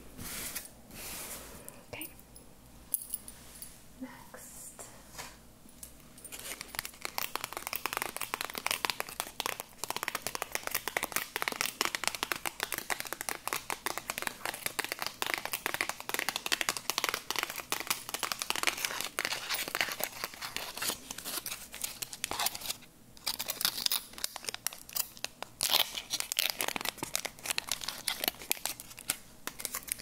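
Close-miked crinkling and tearing of the packaging on a small pack of incense matches as it is opened by hand. There is light handling first, then a dense run of fine crackles from about seven seconds in until just before the end.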